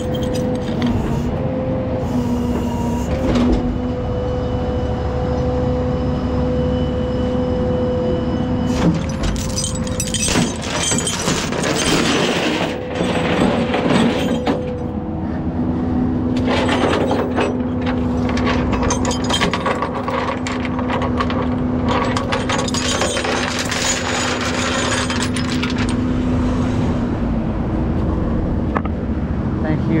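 Peterbilt rollback tow truck running, with a steady hum that holds for several seconds at a time, twice. In between come sharp metallic clanks of tie-down chains on the steel deck.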